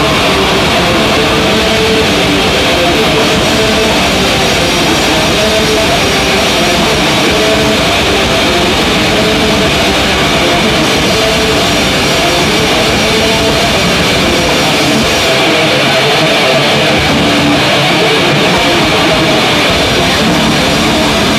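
Metal band playing live: heavily distorted electric guitars over a Tama drum kit, loud and dense without a break. The lowest bass thins out for a few seconds near the end.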